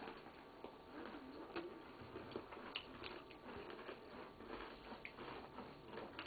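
Faint chewing of Oreo cookies, with scattered small clicks and ticks.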